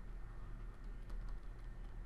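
Faint light clicks and taps of a stylus writing on a tablet screen, over a low steady hum.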